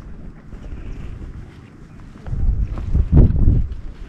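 Wind buffeting the camera microphone, a low rumble that swells into a stronger gust a little past halfway.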